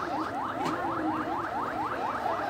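Emergency vehicle siren on a fast yelp: a rising tone that repeats about five times a second.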